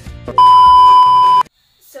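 A loud electronic beep: one steady pure tone, like a censor bleep, held for about a second over faint background music and cut off abruptly.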